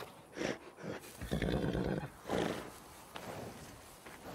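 A horse close up making several short, breathy vocal sounds, the longest and loudest lasting nearly a second about a second in, with a sharp knock a little after three seconds.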